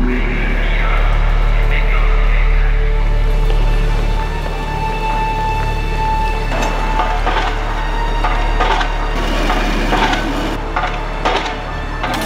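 Background music built on a low sustained drone, with a held higher tone for a few seconds. In the second half it is joined by scattered sharp knocks and taps.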